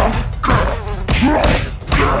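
Thuds of foam Hulk fists smashing down into a frosted cake, one hit right at the start and more following over the next second and a half.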